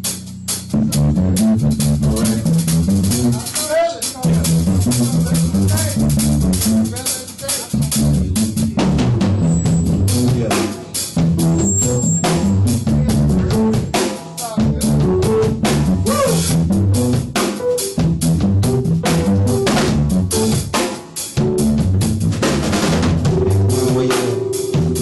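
Band playing an instrumental R&B groove without vocals: a drum kit's kick and snare keep a steady beat over a bass line moving in stepped notes.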